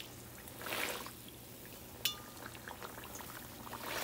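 Hot oil sizzling around a pua fritter as it is pressed with a perforated metal skimmer in a cast-iron wok, the sizzle swelling briefly near the start. About halfway through the skimmer gives a sharp metallic clink against the wok.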